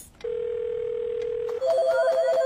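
A single steady telephone tone held for about a second and a half, the line sound of a phone call that has been cut off. Near the end, louder music cuts in with two alternating notes.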